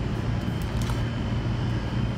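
Steady low mechanical hum of bakery kitchen equipment, with a faint steady high whine above it.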